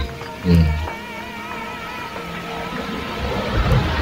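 Background music with a high, wavering melody line, under a man's short "hmm" about half a second in. A few low thumps come near the end.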